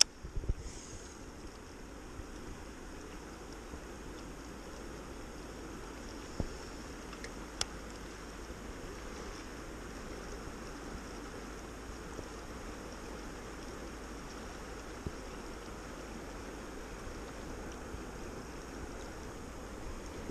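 Steady rush of river current flowing over riffles, with a few faint clicks in the middle.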